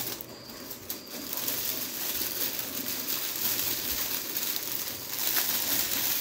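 Clear plastic packaging bag crinkling and rustling as a folded cotton t-shirt is handled and pulled out of it, a little louder near the end.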